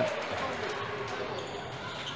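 Basketball being dribbled on a hardwood court, over the steady background noise of the sports hall.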